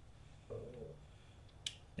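A single sharp click near the end as the gearshift detent lever and its bolt are handled on the opened engine case, with a fainter, brief sound about half a second in.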